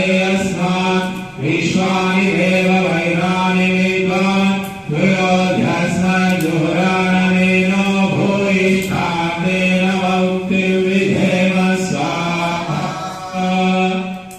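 A man's voice chanting a Hindu mantra through a microphone, held on one steady pitch in long phrases with short breaks every few seconds; the chant stops at the end.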